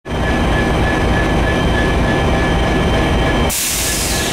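Amtrak diesel locomotive idling at the platform, a loud steady low rumble. A sudden loud hiss starts about three and a half seconds in.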